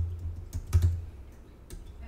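Typing on a computer keyboard, keystrokes entering a password: a run of irregular key clicks with dull thuds, the loudest a little under a second in.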